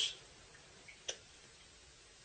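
A toddler's single short hiccup about a second in, against a quiet room.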